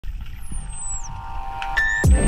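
Dolphins whistling underwater: a high whistle sliding down in pitch about half a second in and another rising near the end, over a low underwater rumble.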